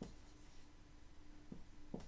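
Dry-erase marker writing on a whiteboard: faint scratching strokes with a few short taps of the tip against the board.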